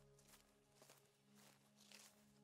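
Very faint footsteps of a hiker walking a dirt trail through dry grass, under soft, sustained music chords.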